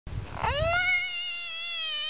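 A bullfrog's distress scream as it is grabbed by hand: one long, high wail made with its mouth open, starting about half a second in after some rustling in the grass, rising quickly in pitch and then holding steady.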